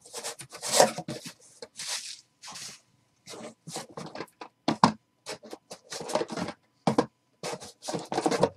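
A cardboard case being opened by hand, with its flaps folded back and shrink-wrapped card boxes slid out against the cardboard. It makes a string of short, irregular scrapes and rustles.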